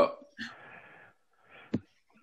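Speech over a video call: one spoken 'well', then a breathy sound and a brief, sharp vocal noise near the end.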